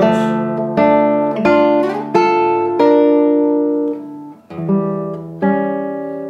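Classical guitar, its sixth string tuned down to D, playing a slow arpeggio of plucked single notes and two-note pairs, each left ringing into the next. There is a short break about four seconds in before two more plucks.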